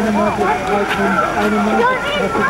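Several people's voices talking over one another, some of them high-pitched, with no single voice standing out.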